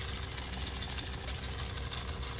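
A handheld baby toy making a continuous, fast rattling buzz.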